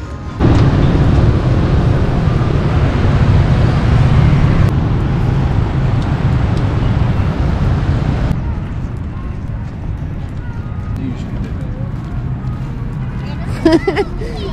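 Wind buffeting the camera microphone outdoors: a loud rushing rumble, heaviest in the low end, that starts suddenly and eases off after about eight seconds to a lower, steadier rush.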